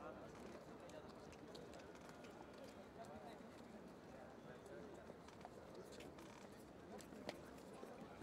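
Near silence: faint open-air ambience with distant, indistinct voices and a few faint clicks.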